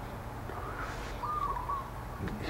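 A bird calling once, a short wavering note about a second in, over a faint steady low hum.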